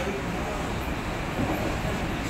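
Steady background noise of a room with faint, indistinct voices in it.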